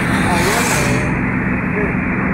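Car cabin noise while driving at highway speed: a steady low engine and tyre drone, with a brief rush of hiss about half a second in.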